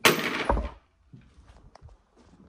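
A sudden metal clatter ending in a heavy thud about half a second in, then a few light clicks: a metal transmission housing being handled on a concrete floor.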